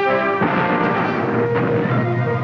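Orchestral score with brass and timpani. A new chord enters with a sharp hit about half a second in and is held.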